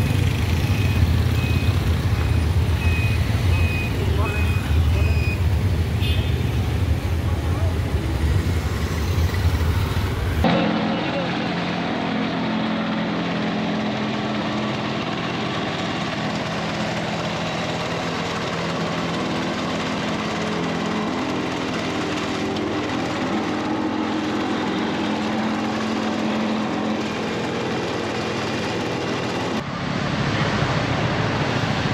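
A small double-drum road roller's engine runs steadily while it compacts a dirt footpath, starting after an abrupt change about ten seconds in. Before that there is a loud low rumble of street noise with a faint beeping.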